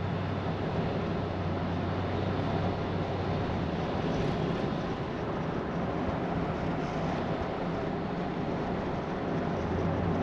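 Steady road noise heard from inside the cabin of a moving car: tyre rumble on the road with a low, even engine hum.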